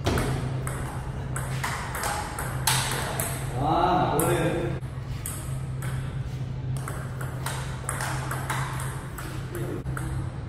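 Table tennis rally: the ball clicks back and forth off the paddles and the table many times in quick succession. A voice calls out briefly about four seconds in.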